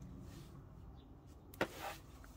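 Fabric rustling and swishing faintly as hands fold it and smooth it flat on a cutting mat, with a sharp tap and a short swish about one and a half seconds in.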